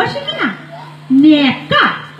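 A woman's voice through a microphone making about four short, wordless calls with gliding pitch, over a steady electrical hum from the sound system.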